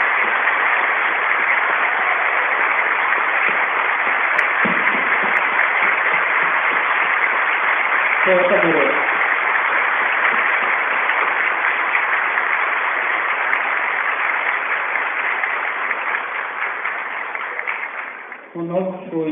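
An audience applauding in a large hall, a long, steady ovation that dies down near the end.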